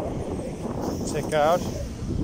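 Steady low rushing of wind over the microphone of a camera on a moving bicycle, with a short spoken word about one and a half seconds in.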